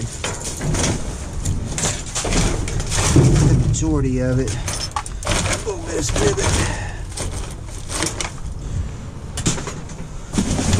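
Hands rummaging through dumpster trash of plastic packaging, cardboard and small electrical parts: rustling and clattering with many small clicks. A short spoken phrase comes about four seconds in.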